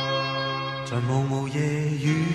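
Instrumental break of a slow pop ballad. A held chord dies away, then new sustained notes come in about a second in, with no singing.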